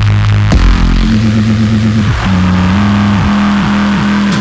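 Instrumental drum and bass music, loud throughout: a heavy synth bass line in held notes, several of which slide downward in pitch, with no vocals.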